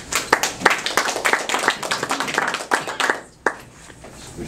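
A small audience clapping in a short round of applause that thins out about three seconds in, with one last clap after it.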